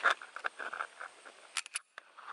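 Faint handling noise around a pistol being dry-fired with a slow trigger press, then a quick cluster of sharp, high clicks near the end.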